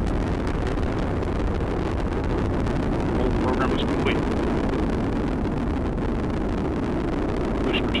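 Steady, low rumbling roar of an Atlas V rocket in powered ascent, driven by its RD-180 main engine and a single solid rocket booster.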